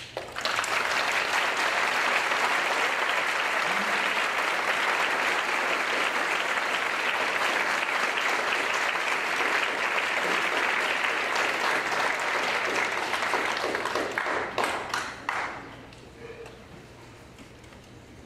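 Concert audience applauding: the applause starts at once, holds steady for about fourteen seconds, then thins to a few scattered claps and dies away about fifteen seconds in.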